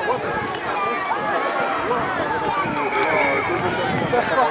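Many overlapping voices calling and chattering at once, mostly high children's voices, with no single speaker standing out.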